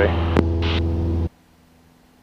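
Cessna 172 Skyhawk's engine and propeller drone in the cabin, a steady low hum in climb, that cuts off abruptly a little over a second in, leaving only a faint hum.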